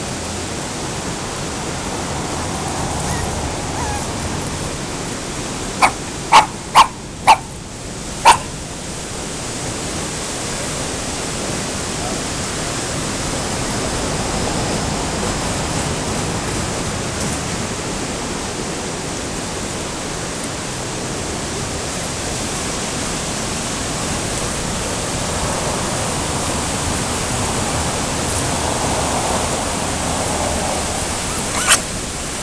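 A Bolognese dog gives five short, sharp barks in quick succession about six to eight seconds in. Behind them runs the steady rushing of a river weir.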